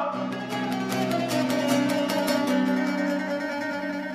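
A wooden long-necked tambura-type folk lute played solo, rapid plucked and strummed notes closing out a song in the Bosnian izvorna style, easing off slightly toward the end.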